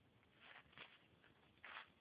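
Near silence, with a few faint short rustles of a puppy nosing through dry dirt and leaves: one about half a second in, another just after, and a slightly louder one near the end.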